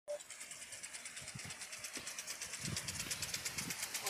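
Field irrigation sprinkler running, a faint rhythmic spray hiss pulsing about seven times a second, with a few soft low thumps.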